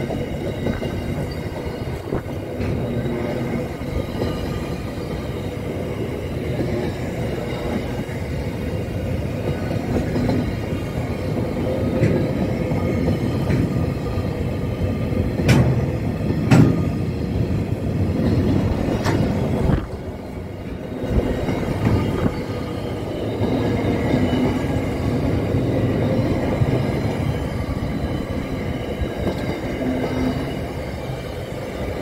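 Bowmans Rail freight train's wagons rolling past at speed: a steady rumble of steel wheels on the rails, with a few sharp clacks spread through it.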